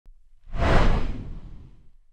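Intro whoosh sound effect: a loud noisy swoosh that swells about half a second in, peaks almost at once and fades away over the next second.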